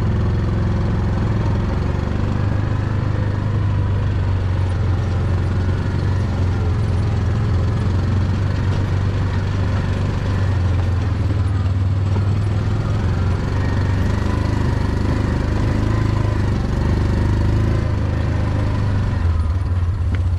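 A small vehicle's engine running at a steady speed as it drives along, a constant low hum with no change in pitch.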